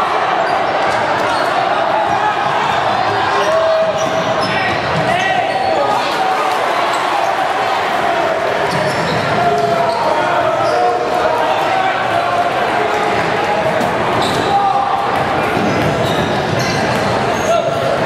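A basketball being dribbled on a hardwood gym floor, with sneakers squeaking, under steady crowd chatter in a large, echoing gym.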